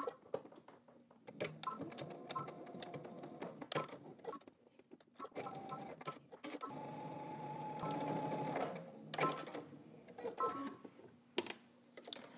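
Domestic electric sewing machine stitching a short seam in several stop-and-start runs, its motor humming steadily during each run, with clicks between runs; the longest run comes a little past the middle.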